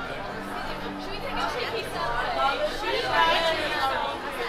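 Chatter of people on a restaurant patio and walking by, with voices getting louder and closer in the second half.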